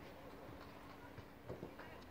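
Faint open-air ambience on a football pitch, with a few soft knocks and distant voices about one and a half seconds in.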